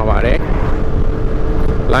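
Motor scooter running at a steady cruising speed, with a steady hum and heavy wind rumble on the handlebar-mounted microphone.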